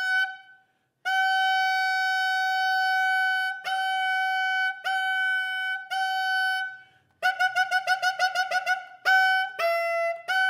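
Solo bass clarinet playing a high note in its upper register. The note is held for about two and a half seconds, then re-attacked three times. After a short break comes a fast run of rapidly repeated notes on the same pitch, and near the end a few notes step up and down.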